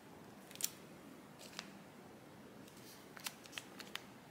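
Paper sticker sheets being handled and laid onto a stack: quiet, crisp paper clicks and rustles. The sharpest click comes about half a second in, with a handful more near the end.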